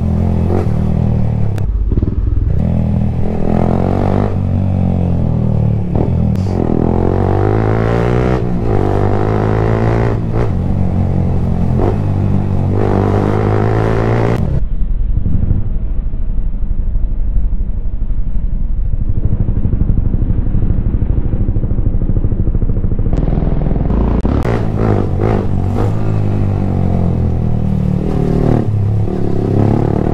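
Yamaha motorcycle engine running under way, its pitch rising and falling with throttle and gear changes, with wind and road noise on the microphone. For several seconds in the middle the sound is duller.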